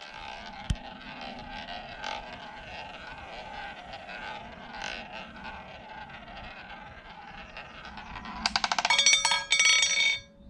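Roulette ball rolling around the track of a spinning wooden roulette wheel, a steady whirring roll. About eight and a half seconds in, the ball drops and clatters in rapid clicks across the frets and pockets before settling.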